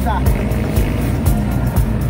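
Steady engine and road noise from inside a moving vehicle, with music playing over it.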